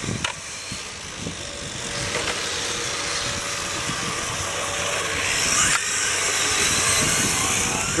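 Radio-controlled model cars racing on asphalt, their small motors whining and tyres hissing as they pass, growing louder in the second half, with one sharp tick about three-quarters of the way through.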